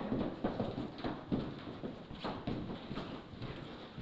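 Footsteps of heeled shoes on a wooden floor as a few people walk: a run of irregular clacking steps, about three a second, a little quieter toward the end.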